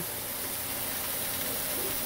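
Blackened redfish fillets frying in butter in a hot cast iron skillet: a steady sizzle.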